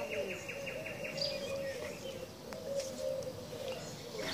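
Songbirds calling in woodland. A rapid series of high ticking notes, about eight a second, stops a little over a second in. Under it runs a continuous lower string of short rising-and-falling notes, with a few brief high chirps.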